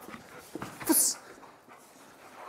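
Belgian Malinois panting and scrambling around on a rubber mat during play, with one short, sharp breathy burst about a second in.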